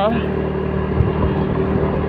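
Motor scooter running steadily on the move, its engine hum under wind and road noise, with one brief thump about a second in.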